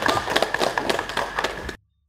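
Audience applause from many hands clapping at once, cut off abruptly near the end.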